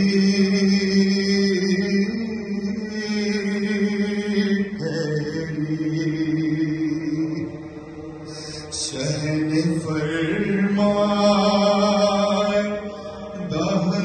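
Male chanting of a Muharram salam, a lament for Imam Hussain, in Urdu, sung in long held notes. There are brief breaks between phrases about five, nine and thirteen seconds in.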